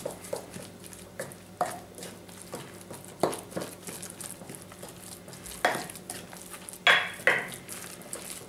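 Wooden spoon stirring and mashing a wet raw mince mixture in a bowl: soft scraping with irregular knocks of the spoon against the bowl, a few sharper ones near the end.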